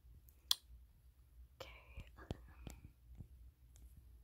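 Faint taps on a phone touchscreen during digital drawing, with one sharp click about half a second in. A brief whispered murmur comes in the middle.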